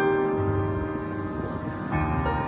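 Piano playing slowly: a chord struck at the start rings on and fades, and the next notes are struck near the end.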